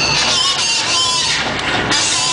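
A concert crowd cheering and screaming, with many shrill high voices over a steady loud roar.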